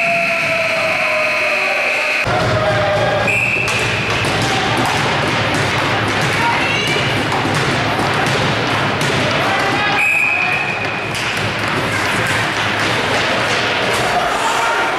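Ice hockey game in an arena: repeated knocks of sticks, puck and boards over a steady din of skating and crowd, with a high steady whistle-like tone for the first two seconds and shorter ones about three seconds in and about ten seconds in.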